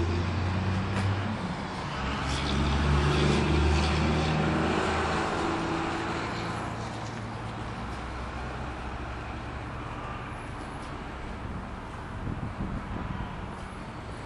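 A vehicle's engine hum grows louder over the first few seconds, then fades away by about the middle. After that, faint outdoor traffic noise remains.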